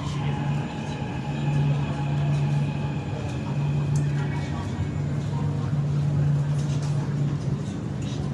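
Metro train pulling into the station and coming to a stop, a steady low hum under the station's noise, with passengers' voices in the background.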